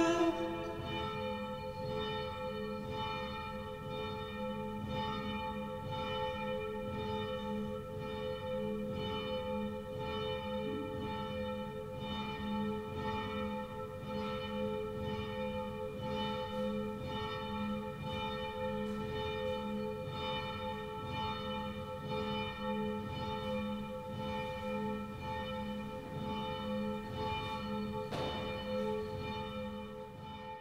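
Church bells ringing, strokes following one another at a steady pace, fading out at the end.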